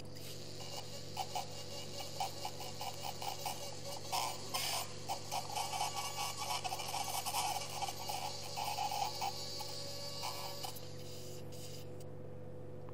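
Surgical suction tube drawing up irrigation fluid from the bone: an irregular gurgling slurp over a steady hiss, starting just after the beginning and cutting off about a second before the end. A constant low electrical hum runs underneath.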